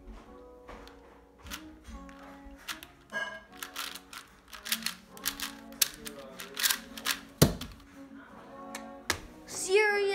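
Plastic 4x4 puzzle cube being turned by hand: quick, irregular clicks as its layers snap round, with one louder knock about seven seconds in.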